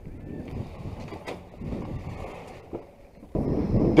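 Uneven low wind rumble on the microphone, with one sharp click just over a second in. Near the end the noise jumps suddenly louder.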